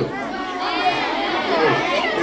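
A crowd of children calling out answers at once, their voices overlapping in a jumble of chatter.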